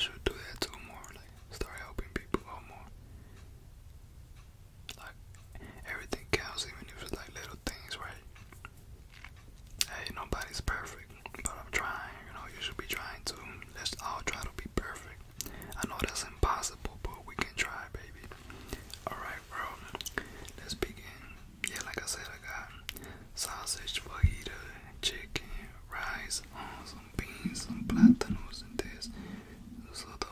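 A man whispering close to a microphone in stretches, with scattered mouth clicks and one louder low thud about two seconds before the end.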